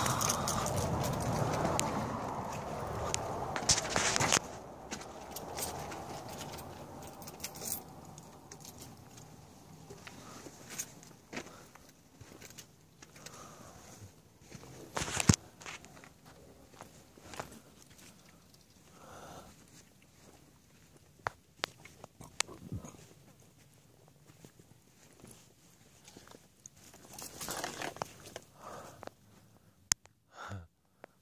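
Footsteps on a sandy canyon floor, with scattered crunches and clicks, after a few seconds of louder rustling at the start.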